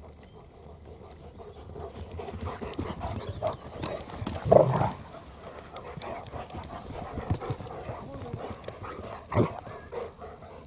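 Two dogs playing rough at close range: scuffling, paws thudding on turf, and panting. There is a louder burst about halfway through and another sharp knock near the end.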